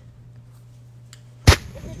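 A quiet stretch, then one loud, sharp thud about one and a half seconds in: a bag of concrete mix dropped onto grassy ground, raising a puff of concrete dust.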